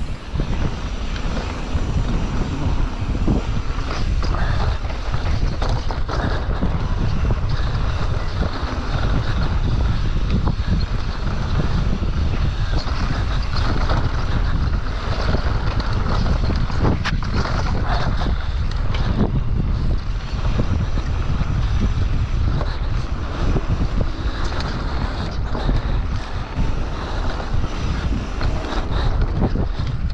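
Wind buffeting the microphone of a handlebar-mounted camera on a mountain bike descending dirt singletrack at speed: a steady, loud rumble, with the tyres rolling over the dirt and scattered knocks and rattles from the bike over bumps.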